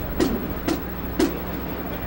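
Marching band drum strokes tapping out the step as the band marches, three sharp hits about half a second apart over a steady background noise.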